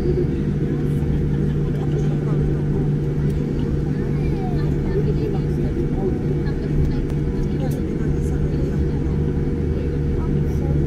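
Steady low rumble and hum inside the cabin of a Boeing 787-9 airliner taxiing on the ground, engines at idle.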